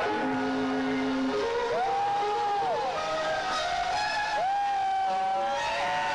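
Electric guitar playing slow, sustained lead notes: a low held note, then twice a note bent up, held and released back down, about two seconds in and again about four and a half seconds in.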